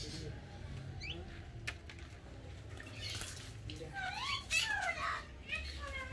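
A parrot calling: a short rising call about a second in, then a loud cluster of squawky rising-and-falling calls from about four seconds in.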